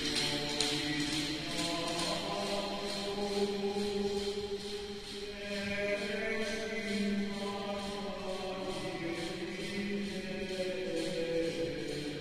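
Voices singing a slow liturgical chant in long held notes, carried by the echo of a large church.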